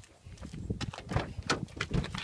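Footsteps and handling knocks, with the clicks and thuds of a Nissan Cube's rear side door being unlatched and swung open: a string of irregular short knocks, louder from about a second in.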